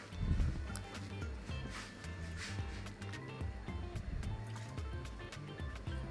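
Soft background music with a low bass line stepping from note to note.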